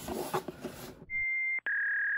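A steady electronic bleep tone, added in editing, begins about a second in over otherwise silenced audio. It breaks off for an instant and comes back slightly lower in pitch. Before it there is a faint rustle of handling.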